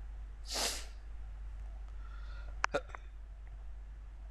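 A person's single short, sharp breath through the nose about half a second in, then three quick clicks close together about two and a half seconds in, over a steady low hum.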